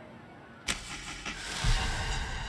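Film sound design for a lit cigar flicked through the air in slow motion: a sudden swoosh about two-thirds of a second in, followed by a deep, pulsing rumble that builds toward the end.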